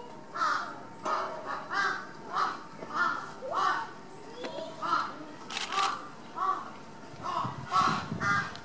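A bird calling over and over, short pitched calls spaced about two-thirds of a second apart, a dozen or so in a row.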